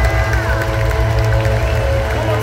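Loud live worship-band music played through an arena's sound system, with a held high note that slides down about a second in over a steady bass.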